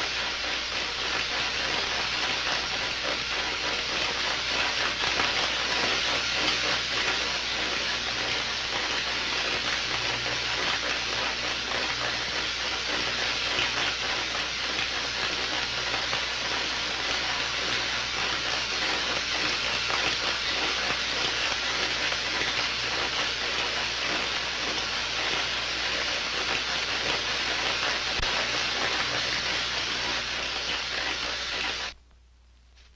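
Steady electrical hissing with a faint low hum, as of laboratory electrical apparatus running, unbroken throughout.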